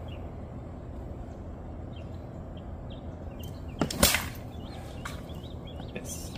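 A paracord shepherd's sling cast at a target: one short rising whoosh ending in a sharp snap, about four seconds in.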